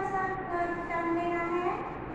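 A woman's voice drawing out one long vowel, held as two steady notes, the second lower, fading out shortly before the end.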